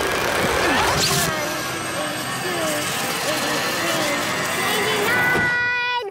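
Cartoon magic sound effects of a mirror's glowing energy vortex: a dense whooshing swirl full of gliding, warbling tones, with a bright sweep about a second in. Over it runs background music that settles into a held chord near the end and cuts off sharply.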